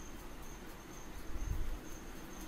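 Faint high-pitched chirping that pulses on and off a few times a second under quiet room noise, with a brief low thump about one and a half seconds in.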